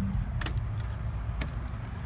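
A locked glass restaurant door being tried: its latch and frame give two short clicks about a second apart as it holds fast. A steady low rumble runs underneath.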